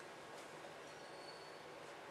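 Quiet room tone: a steady faint hiss with no distinct events.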